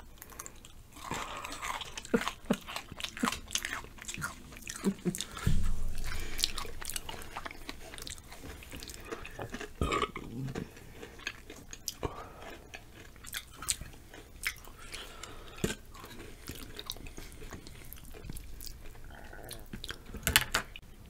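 Close-miked chewing and crunching of chocolate-covered potato chips, many small irregular crisp crackles. A single low thud about five and a half seconds in is the loudest sound.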